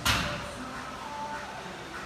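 A single sharp impact right at the start, dying away within a fraction of a second, followed by quiet room tone with faint background music.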